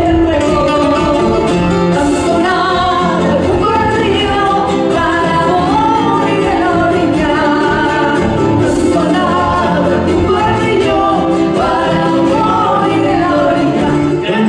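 Live Latin American folk song: women's voices singing a melody together over strummed acoustic guitars and a small guitar-like string instrument, with a steady strummed rhythm.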